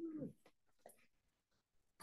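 A woman's sung note trailing off with a falling pitch in the first third of a second, then near silence: a breath pause between lines of a hymn.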